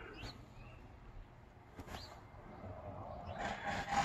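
Faint outdoor background with two short rising bird chirps, about a second and a half apart; a rustle of movement builds near the end.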